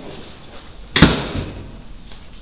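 A door banging once, sharply, about a second in, with a short ringing tail.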